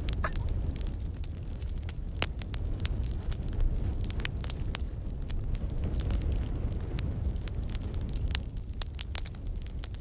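Steady low rumble with many short, sharp clicks and crackles scattered through it.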